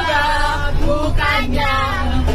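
Group of girls singing together, one into a handheld microphone, over a steady low rumble from the moving bus.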